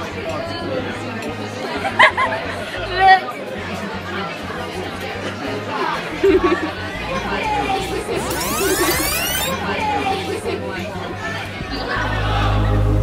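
Restaurant dining-room chatter, many voices talking at once over background music, with a rising sweep about eight seconds in.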